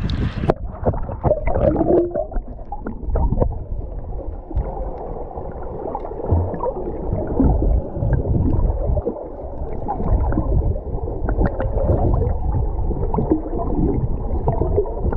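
Muffled water gurgling and sloshing around a camera that goes underwater about half a second in, after which only the dull low end of the sound is left.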